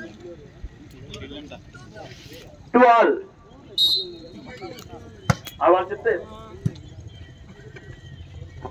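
Volleyball being played outdoors: men's shouts from the court and sideline, a brief high whistle just before four seconds in, then a few sharp smacks of the ball being struck in the second half.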